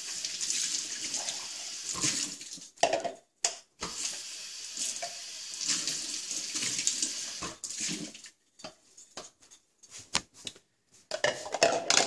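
Water running from a tap into a sink, with a short break partway through, then stopping a little past halfway. A few scattered knocks and clinks of plastic cups and dishes being handled follow.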